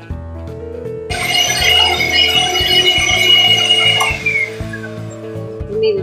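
Soft background piano music plays throughout. About a second in, an electric hand mixer whipping dalgona coffee cream in a glass bowl starts up with a high whine for about three seconds, then is switched off, its pitch falling as the motor winds down.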